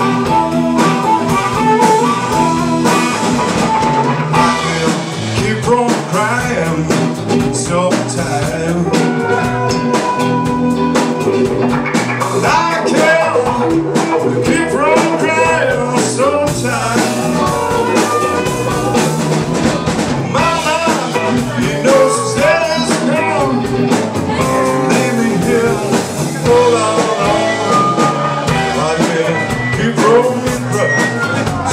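Live blues band playing an instrumental break: an amplified harmonica, played into the vocal microphone, leads with bending notes over electric guitar and drum kit.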